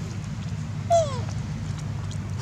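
A young long-tailed macaque gives one short falling cry about a second in.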